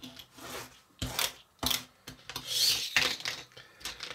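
Miniature plastic pull-back toy car and its plastic track being handled: a few sharp clicks about a second in, then a short rubbing, rasping noise around three seconds in.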